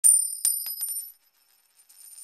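Bright metallic chime sound effect: two sharp ringing strikes in quick succession, then a few lighter taps that die away just after a second in, followed by a softer high shimmering jingle near the end.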